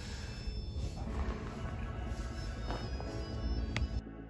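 Quiet background music of steady held tones, with one sharp click near the end.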